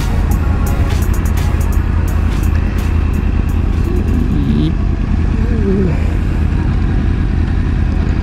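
Yamaha R1's crossplane inline-four running at low revs as the bike rolls slowly, a steady low rumble.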